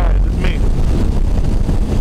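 Steady wind rumble on the microphone from riding a 2009 Suzuki Hayabusa at freeway speed, with the bike's inline-four engine and road noise underneath.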